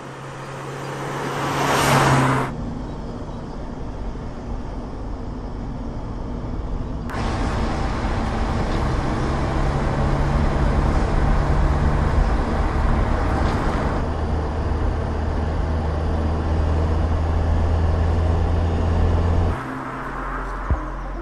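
A car driving: a steady low engine hum under tyre and road noise that slowly grows louder, with a loud rushing swell about two seconds in, as of the car passing close. The sound shifts abruptly about seven and fourteen seconds in and cuts off just before the end.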